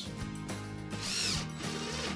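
Cordless drill driving a screw through a metal wall bracket into a wall anchor. Its motor whine rises and falls in a short run about a second in, over soft background music.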